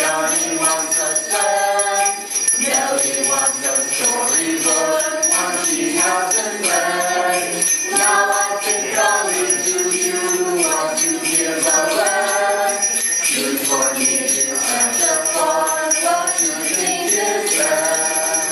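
A small group of men and women singing a Christmas carol together, with hand-held sleigh bells shaken steadily throughout and no other accompaniment.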